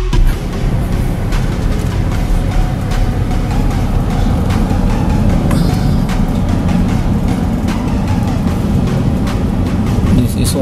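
Steady engine and road rumble of a car driving along a town street, heard from inside the cabin, with background music under it.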